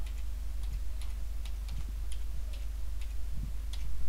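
Computer keyboard keys being typed, about ten short, irregular clicks as a word is entered, over a steady low hum.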